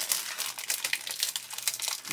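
Clear plastic bag crinkling as a grey plastic model-kit sprue is pulled out of it: a run of irregular crackles.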